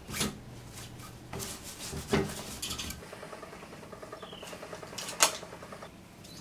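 A sticky lint roller rubbed over a fabric dress in short, rasping strokes, with a single sharp click near the end.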